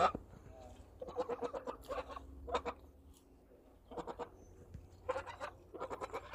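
Domestic geese giving a handful of short, quiet calls, separated by brief pauses.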